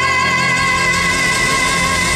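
Pop song with a female vocalist holding one long sung note over full band accompaniment.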